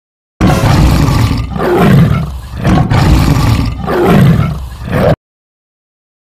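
A loud, dubbed-in animal roar sound effect. It starts suddenly just under half a second in, swells and fades about four times, and cuts off abruptly about five seconds in.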